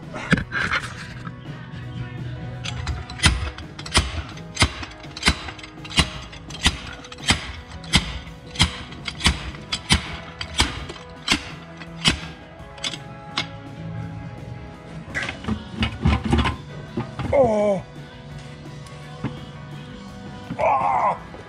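Slide hammer striking repeatedly, about three hits every two seconds, to pull a rear axle shaft out of its housing, with a few more knocks later; background music plays throughout.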